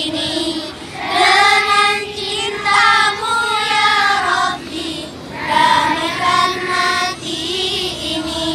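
Children's voices singing a song in phrases of a second or two, with short breaks between them.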